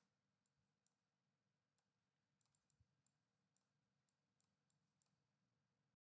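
Near silence, with a dozen or so very faint, short clicks scattered through it.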